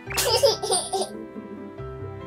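A loud burst of laughter lasting about a second, over soft background music.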